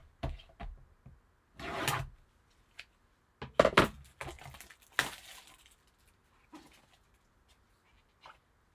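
Plastic shrink wrap on a sealed trading-card box being cut and torn off. It comes as a series of short crinkling, tearing rustles, loudest just before four seconds in and at five seconds, with cardboard handling noises after.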